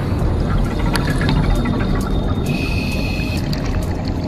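Scuba diver's exhaled bubbles and water movement underwater, a dense low bubbling rumble with scattered small clicks, under soft background music; a short steady high tone sounds a little past halfway.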